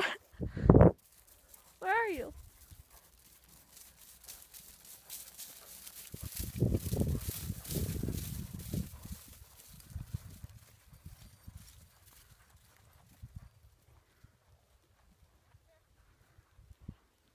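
Hoofbeats of a horse cantering across a stubble field, loudest as it passes close about six to nine seconds in and then fading as it moves away. A loud thump comes right at the start, and a short call comes about two seconds in.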